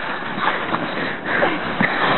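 Two people scuffling and wrestling on snow-covered ground: a rough, steady rustling noise.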